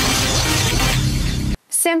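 Closing moment of an electronic news-programme intro jingle: a dense, hissy crash over a pulsing low beat that cuts off abruptly near the end, followed by a woman starting to speak.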